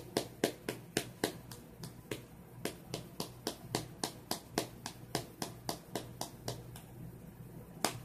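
A can of Copenhagen dip tobacco being packed: the closed can tapped over and over, a steady run of sharp taps about four a second.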